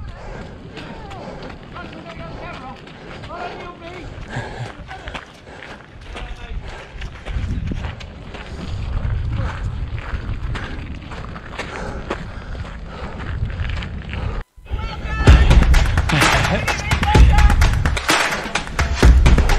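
A trail runner's footsteps on a muddy path, with wind rumbling on the action camera's microphone and faint voices in the background. About fourteen and a half seconds in, the sound cuts out for an instant and returns louder, the footfalls heavier, under background music.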